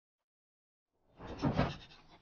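Dead silence, then about a second in a man groans once, a short drawn-out vocal sound that peaks and fades.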